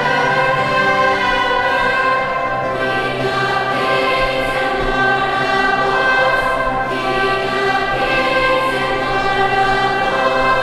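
Large girls' choir singing in sustained, held phrases, with a low held note from the accompaniment underneath.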